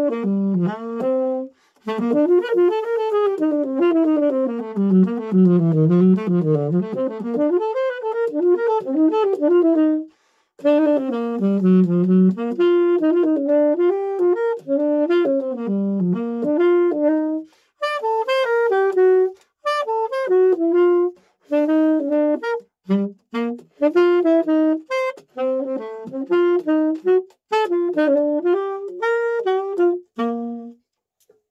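Unaccompanied tenor saxophone improvising fast bebop-style jazz lines, using the C harmonic major scale over a D minor, G7 flat-nine, C major progression. The lines come in several phrases, broken by short pauses for breath.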